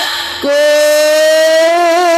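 A female singer's voice through a microphone and PA holding one long sung note in a Banyumasan gamelan song. It enters about half a second in, rises slightly in pitch, and starts to waver with vibrato near the end.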